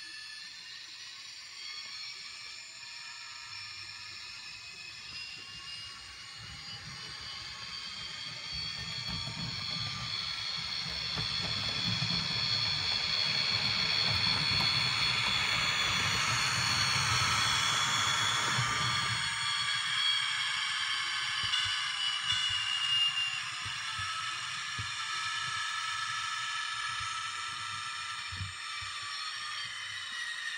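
HO scale model train, a GO Transit diesel locomotive pulling a coach, running along the layout: the motor gives high, slowly gliding whines while the rumble of the wheels on the track builds as it passes, then cuts off suddenly about two-thirds of the way in, leaving the whine.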